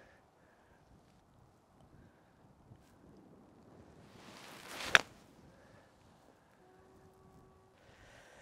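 A golf bunker shot: a swish builds for about a second, then a single sharp strike as the club hits the sand and ball, about five seconds in.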